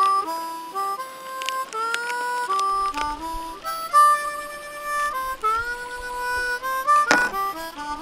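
Harmonica music playing a melody of held notes, often several at once, with a wavering held note about halfway through.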